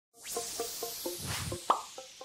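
Animated logo intro sound effects: a quick run of short pitched pops, about four a second, over a falling whoosh, ending in a louder pop near the end.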